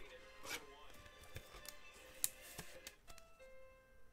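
Faint background music with held notes, under light clicks and rustles of a trading card in a clear plastic holder being handled; the sharpest click comes a little past two seconds in.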